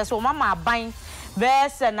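Speech only: a woman reading the news, with a short pause just past the middle.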